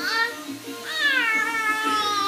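A four-month-old baby vocalizing in high-pitched squeals: a short call at the start, then one long call from about a second in that slides down in pitch.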